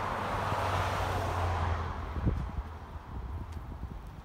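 A pickup truck passing by on the street: its tyre and engine rush is strongest at first and fades away over about two seconds, leaving a low traffic rumble. A single short knock comes about two seconds in.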